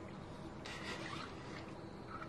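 Faint rubbing and rustling as the plastic siphon tube is handled, heard for about a second near the middle.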